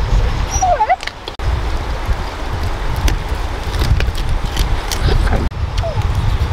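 A short, high animal call that falls and then rises in pitch about a second in, with a fainter call near the end, over a steady low rumble and small clicks.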